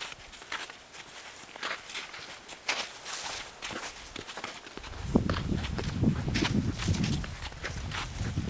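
Footsteps of a hiker walking along a mountain trail, irregular steps. About five seconds in, a loud low rumble comes in and covers the lower sounds.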